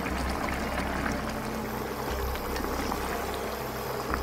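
Mapo tofu sauce simmering and bubbling in a frying pan, a steady wet crackle over a low constant hum.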